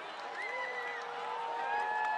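Spectators' voices in the distance calling out in long, drawn-out calls that overlap and start at different moments, over a faint background of crowd noise.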